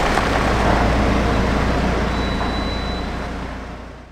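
Road noise inside a moving Sprinter van's cabin: a steady low rumble with tyre hiss, fading away near the end.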